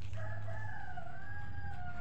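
A rooster crowing: one long drawn-out call that slowly falls in pitch.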